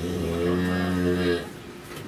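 A cow in the chute mooing once, a low, steady moo that lasts about a second and a half and stops partway through.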